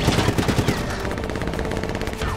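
Automatic gunfire in a film soundtrack: dense overlapping shots, settling about a second in into a faster, even rattle of rapid fire.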